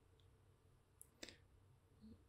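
Near silence: room tone with two faint clicks about a second in, a quarter of a second apart.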